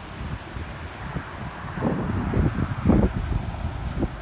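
Wind buffeting the camera microphone, a gusty low rumble that grows stronger about two seconds in.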